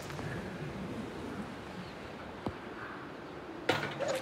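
A golf club striking a ball with a sharp crack right at the start, then quiet, steady outdoor background noise with a single faint tick about two and a half seconds in.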